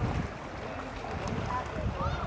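Wind buffeting the microphone, over the splashing of swimmers' strokes in the pool and faint distant voices.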